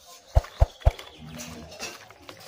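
Three sharp knocks in quick succession, about four a second, followed by softer handling sounds.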